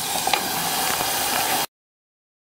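Ground tomato, chilli and garlic paste sizzling steadily in hot oil in a clay pot as it is sautéed and stirred with a wooden spatula. The sound cuts off abruptly near the end into dead silence.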